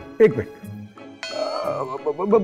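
A short bell-like musical sting, a chime with many ringing overtones lasting under a second, starting a little past halfway. Just before it comes a brief vocal grunt with falling pitch.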